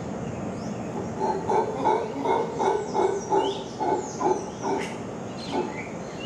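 Howler monkeys calling in a rhythmic series of deep, guttural grunts, about three a second, starting about a second in and tailing off near the end. Small birds chirp higher above them.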